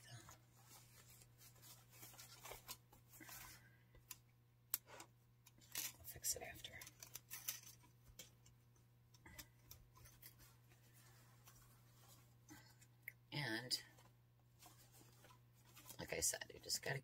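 Faint, scattered rustling and crinkling of wired fabric ribbon as the loops of a large bow are pulled and fluffed by hand, over a steady low hum.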